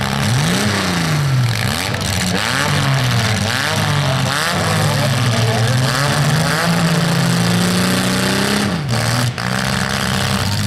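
Demolition derby cars' engines revving over a steady low idle, the pitch repeatedly climbing and falling. One engine holds a high rev for a couple of seconds near the end, then drops back.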